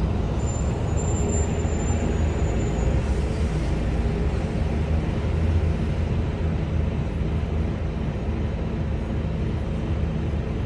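Volvo B9TL double-decker bus's diesel engine running steadily, heard from inside the upper deck, with a faint high whine for the first few seconds.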